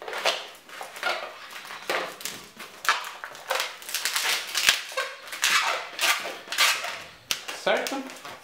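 Inflated latex 260 twisting balloon squeaking and rubbing as hands twist its segments and lock them together, a run of short high squeaks about one or two a second.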